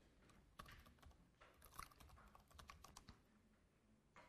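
Faint typing on a computer keyboard: a quick run of keystrokes entering a web address, stopping shortly before the end.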